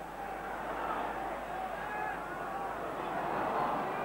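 Football stadium crowd noise: a steady din of thousands of voices, slowly swelling toward the end.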